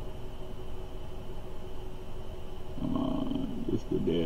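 Steady background hum with faint constant tones. About three seconds in, a short wordless vocal hum, low and wavering in pitch.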